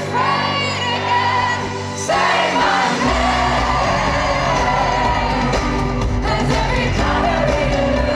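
Live indie-pop band recorded from within the crowd: a woman's voice holds long sung notes over the band, and about three seconds in a heavy bass beat comes in and the music fills out. Yells and whoops from the crowd sound over the music.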